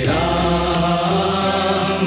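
Hindu devotional chant sung over instrumental backing, the voice held in long notes.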